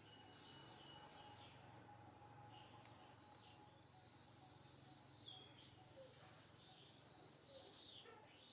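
Near silence: faint background with a low steady hum and a few brief, faint high-pitched chirps.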